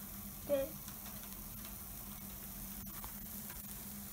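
Takoyaki faintly sizzling on a hot takoyaki griddle: a steady soft hiss over a low hum. A brief vocal sound comes about half a second in, and a light click near three seconds.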